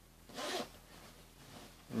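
The metal zipper of a padded children's winter jacket pulled open in one quick stroke about half a second in, followed by a faint rustle of the jacket's fabric.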